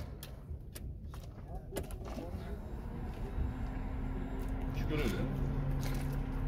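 Car engine idling: a steady low rumble, with a few light clicks in the first two seconds and a steady hum that comes in about halfway and grows louder.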